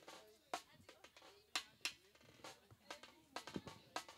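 Drum kit struck in scattered, irregular hits with no steady beat.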